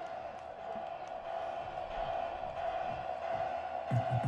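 A single steady held tone over a light even hiss from the event's PA, the lead-in to ring-walk music; a heavy beat comes in right at the end.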